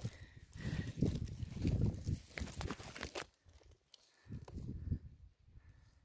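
Irregular rustling and handling of a woven plastic sack as cut Eremurus leaves are pushed into it, in two stretches with a short lull between them.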